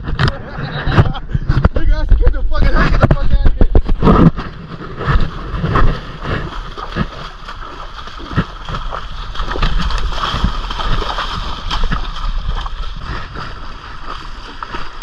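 Water sloshing and splashing as people wade through a shallow, muddy river, with knocks and rubbing on a body-worn camera in the first few seconds, then a steady rush of water.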